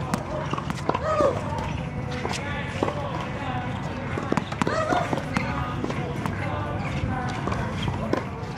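Tennis balls bouncing on a hard court and being struck by a racket: irregular sharp knocks, with voices faintly in the background.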